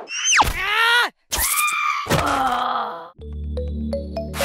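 Cartoon-style sound effects: a steep falling whistle, then wavering groaning cries, until about three seconds in. Light background music with a ticking beat takes over after that.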